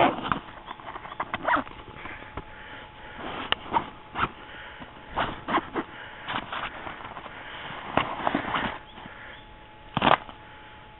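Nylon backpack being handled: irregular rustles of fabric and scattered light clicks, some in quick clusters.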